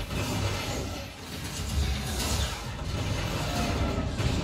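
A film soundtrack played loud through a Dolby Atmos 7.2.4 home cinema speaker system and picked up in the room: dense aircraft-engine and battle sound effects with heavy bass, mixed with music.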